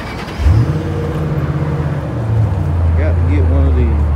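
A car engine catches about half a second in, its pitch sweeping briefly up, then settles into a low, steady idle.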